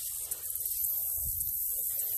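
Outdoor background noise: a low, steady rumble of wind on the phone's microphone with a faint high hiss above it.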